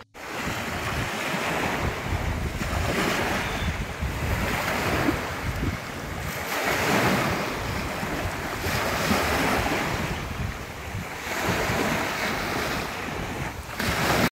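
Small waves breaking and washing up on a sandy beach, swelling and fading every two seconds or so, with wind buffeting the microphone.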